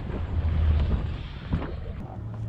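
Low, steady hum of a sailboat's inboard engine running at slow manoeuvring speed, with wind noise on the microphone.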